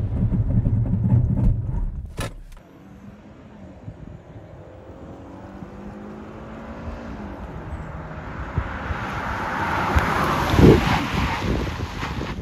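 2023 Kia Sportage X-Pro's 2.5-litre four-cylinder engine and road noise heard from inside the cabin at about 60 mph. Then the SUV is heard from outside: a faint engine note that rises a little, and tyre hiss on wet pavement that grows louder as it approaches and passes, loudest near the end.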